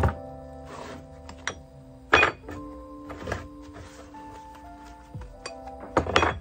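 Background music with several sharp knocks and clinks of cast lead fishing weights and metal mould parts being handled and set down on a wooden workbench; the loudest knocks come right at the start and about two seconds in.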